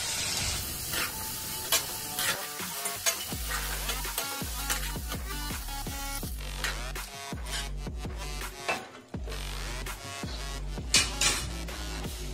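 Metal spatula stirring and scraping through sizzling vegetables in a steel kadhai, with sharp clicks of the spatula against the pan, over background music with a steady beat.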